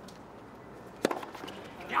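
A single sharp pop of a tennis racket striking the ball on a serve about halfway through, followed by a few faint ticks.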